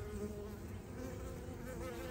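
A swarm of honey bees buzzing close by: a steady, low hum.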